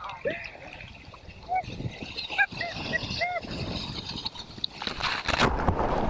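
Short, high voice cries over the wash of surf, then about five seconds in a loud rush of water as a wave breaks over the camera.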